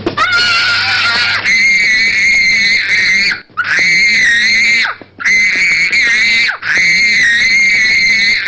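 A toddler screaming in a tantrum: a run of long, high-pitched shrieks, each about a second and a half long, broken by quick breaths.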